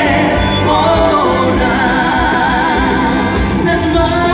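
A live trot song: a female singer with a heavy, wavering vibrato over a backing band with a steady low beat, picked up loud from the audience seats in a large hall.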